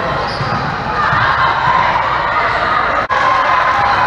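Busy gym din of indoor volleyball play: many voices calling across several courts and volleyballs being struck and bouncing. About three seconds in, the sound cuts out for a moment.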